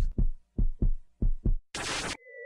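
Heartbeat sound effect: about five deep thumps falling in pairs, followed near the end by a short burst of static-like hiss.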